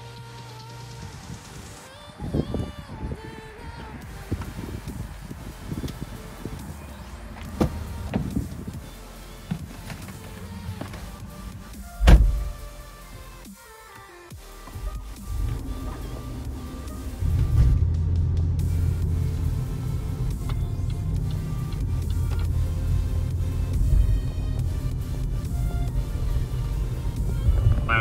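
A single loud thunk about twelve seconds in, like a car door shutting. A few seconds later a Land Rover SUV's engine is push-button started and settles into a steady low running rumble as the car drives, all under background music.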